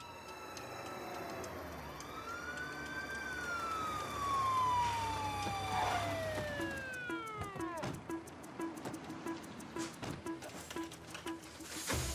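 An emergency-vehicle siren wails: it rises, then glides slowly down in pitch and winds down to a stop about eight seconds in.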